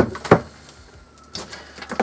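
Sharp clicks and knocks from handling a small computer power supply unit just pulled from a mini PC: two in quick succession at the start, the second the loudest, then a couple more near the end.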